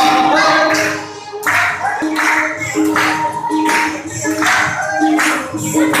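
A song sung by a group, with a steady beat of claps about every three-quarters of a second.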